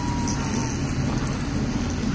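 Steady rain, a continuous hiss and patter.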